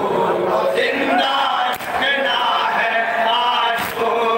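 A large crowd of men chanting a noha together, loud and dense with many voices. About every two seconds comes a sharp collective slap, the mourners striking their chests in unison in matam.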